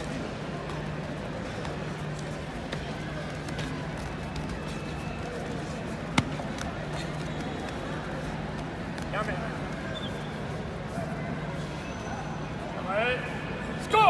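Echoing hall noise from a karate bout, with scattered voices over a steady low hum. A single sharp smack about six seconds in, and loud rising shouts near the end.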